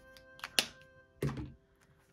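Background music fades out, followed by a few short, sharp taps and a duller thunk. The loudest tap comes about half a second in. They come from a highlighter and a plastic binder page being handled on a table.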